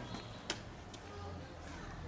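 Quiet outdoor ambience with a steady low hum and one sharp click about half a second in.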